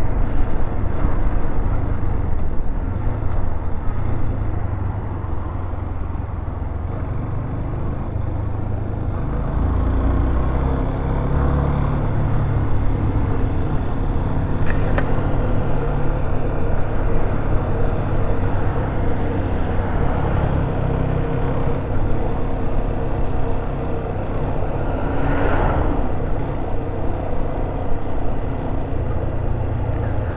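Yamaha Fazer 250's single-cylinder four-stroke engine running steadily at road speed, heard from the rider's seat with heavy low rumble from wind and road. A brief louder swell comes about 25 seconds in.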